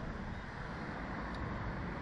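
Steady rush of wind buffeting the microphone as the Slingshot reverse-bungee ride capsule swings through the air.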